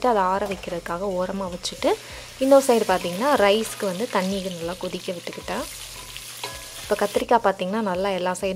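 Spices, dried red chillies and grated coconut roasting in oil in a stainless steel frying pan, sizzling as a spatula stirs them. A voice runs over most of it, with a pause shortly before the end.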